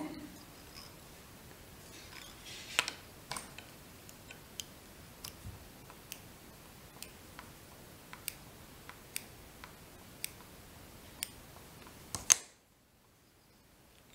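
Faint, irregular sharp clicks, about one or two a second, from small fly-tying scissors and tools worked at the vise. A louder click comes near the end, and then the sound drops to dead silence.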